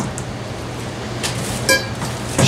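Steady hum of a basement furnace running, with a few light knocks and a short metallic clink near the end as a breaker bar and socket are fitted onto the water heater's anode rod nut.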